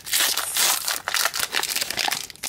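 A trading-card booster pack's foil wrapper being torn open by hand, with irregular crinkling and ripping.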